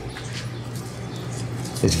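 A steady low hum with faint background noise, and no distinct tool sounds.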